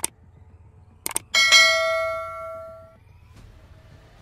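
Subscribe-button animation sound effect: a mouse click, a quick double click about a second later, then a bright bell ding that rings out and fades over about a second and a half.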